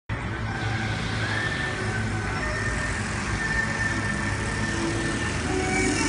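Steady outdoor background noise: a constant low rumble at an even level, with faint higher tones here and there.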